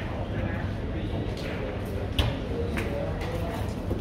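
Billiard hall ambience: a murmur of voices with one sharp click about two seconds in, typical of carom balls striking each other, and a few fainter clicks around it.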